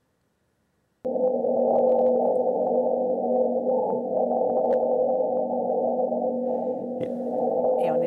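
Wind on Mars as recorded by NASA's InSight lander, its SEIS seismometer picking up the gusts shaking the lander, played back as sound. It starts suddenly about a second in and goes on as a steady low rumbling hum with a couple of held tones.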